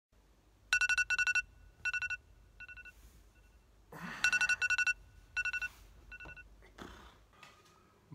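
Phone alarm going off: groups of quick, high electronic beeps. Each round starts loud and trails off, and the pattern starts over about four seconds in.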